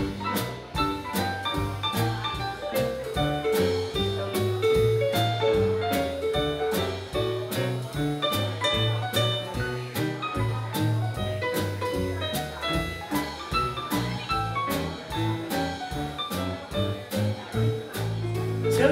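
Live band playing a jazzy instrumental passage: drum kit keeping a steady beat with cymbal hits, electric bass walking low notes and keyboard playing short notes, with no vocals.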